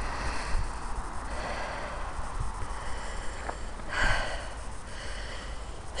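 A walker's breathing close to the microphone, out of breath from climbing a hill, with one louder breath about four seconds in.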